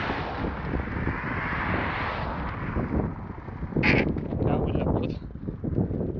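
Wind buffeting the microphone of a camera carried on a moving bicycle, with the rushing noise of a car passing on the road during the first two seconds or so. A brief sharp noise comes about four seconds in.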